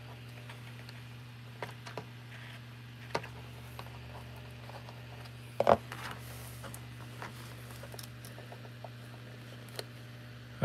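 Scattered light clicks, taps and scratches of flat-nose pliers and fingers working at the wiring of a foam-board model, with one sharper knock a little past halfway. A steady low hum runs underneath.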